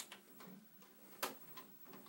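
Two sharp plastic clicks, the louder about a second and a quarter in, with a few faint ticks between: a button on a television's front panel being pressed by hand.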